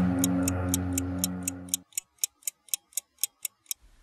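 Stopwatch ticking sound effect, about four sharp ticks a second, over a sustained music chord that cuts off about two seconds in. The ticks then continue alone and stop just before the end.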